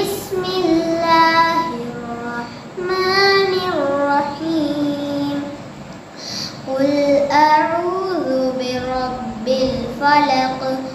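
A boy reciting the Quran in Arabic in a melodic chant, holding long notes that glide up and down in pitch, phrase by phrase with short breaths between.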